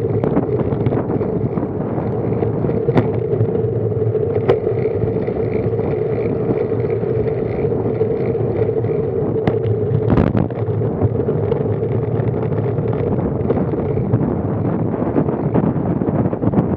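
Riding noise picked up by a bike-mounted action camera on a road bike: steady wind and road rush with a constant hum, broken by a few sharp knocks from the bike and mount jolting over the road.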